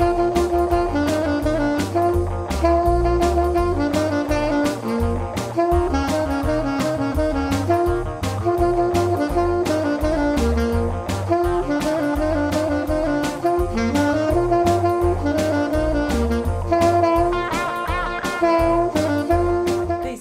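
Alto saxophone playing a jazzy melody over a backing track with a steady drum beat and bass.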